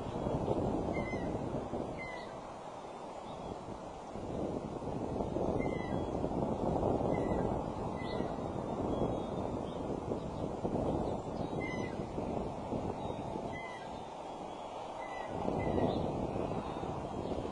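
Steady wind noise rushing on the microphone, with about a dozen short, high bird calls scattered through it.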